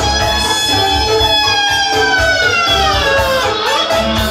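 Live wedding-band music: a clarinet holds one long note that slides down in pitch during the second half, over a steady low beat.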